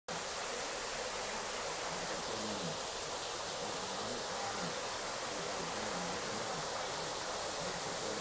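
A thin curtain of water falling from a rock ledge into a grotto, making an even, steady hiss.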